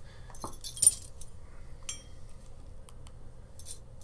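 Stainless-steel surgical instruments, a Castroviejo needle holder among them, clinking as they are handled: one sharp click about a second in, then a short metallic ring and a few light ticks.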